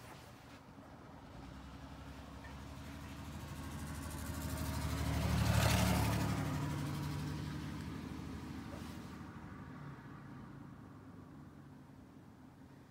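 A vehicle driving past: its engine and tyre noise rise to a peak about halfway through and fade away again.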